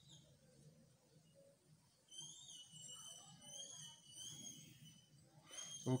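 A faint, high-pitched whistle, wavering slightly in pitch, held for about three and a half seconds from about two seconds in, with a short rising chirp just at the start.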